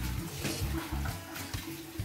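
Kitchen tap running into a stainless steel sink while hands wash something under the stream, with music playing in the background.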